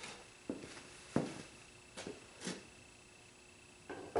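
A few light knocks and clunks of cast-iron hand planes being handled and set down on a wooden workbench, the loudest about a second in.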